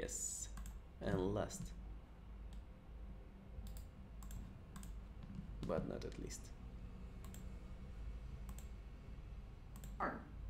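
Scattered single clicks of a computer being operated, spread unevenly through the seconds, with two short vocal sounds from a person, about a second in and near six seconds.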